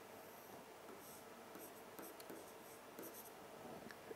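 Faint scratching of a stylus drawing lines across a touchscreen display, with a few light taps of the pen tip.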